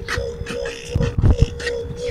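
Live freestyle human beatboxing: a steady held note runs under mouth-made drum sounds, with sharp hi-hat-like clicks and a cluster of heavy bass kicks about a second in.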